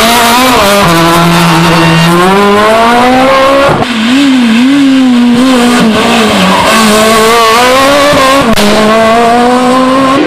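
Rally cars' engines at full throttle. A Renault Clio accelerates away, its engine note climbing steadily. A sudden cut at about four seconds brings in a second Clio, whose revs swing up and down through a tight bend, dip once, then climb again as it accelerates out.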